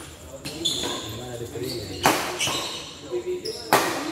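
Badminton rally: two sharp racket strikes on the shuttlecock, about two seconds in and again near the end, with short high squeaks of sneakers on the court between them.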